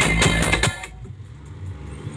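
Loud DJ music with a heavy bass beat played through a truck-mounted loudspeaker stack during a sound test, cutting off suddenly about two-thirds of a second in. A quieter low rumble remains afterwards.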